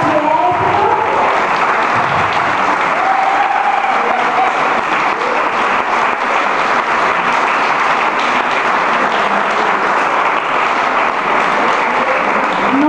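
Audience applause: many people clapping steadily, with a few voices heard over it near the start and again a few seconds in.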